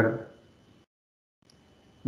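A man's spoken word trailing off, then near silence; the faint background hum drops out entirely for about half a second in the middle.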